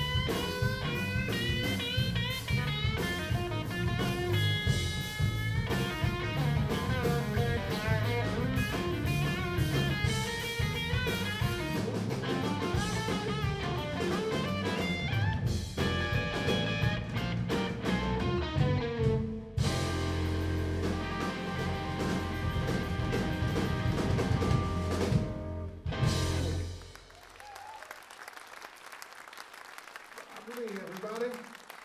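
Live blues-rock trio of electric guitar, electric bass and drum kit playing the end of a song. Guitar lines run over bass and drums, then the band settles on held notes and stops about 27 seconds in, and audience applause follows.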